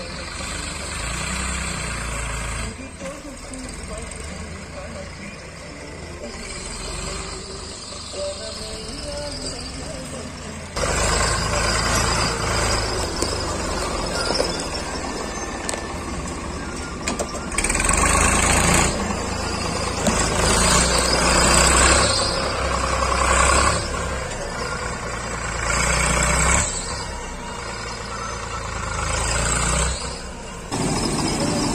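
Farm tractor engine running as the tractor manoeuvres and reverses its trailer, louder from about 11 seconds in.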